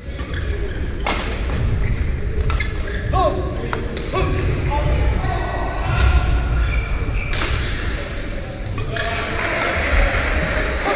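Badminton rackets striking a shuttlecock, several sharp hits about a second and a half apart, with shoe squeaks and footfalls on the court floor, echoing in a large hall.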